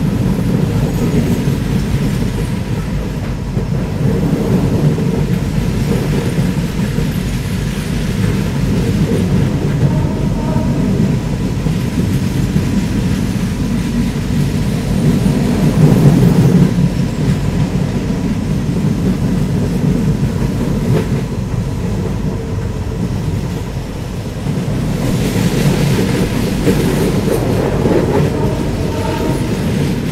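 Passenger train coach running at speed on the line, heard from outside its side: a steady rumble of wheels on rails that grows louder for a moment about halfway.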